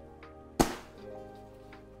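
Background music, with one sharp snap about half a second in from a folding umbrella's frame being closed.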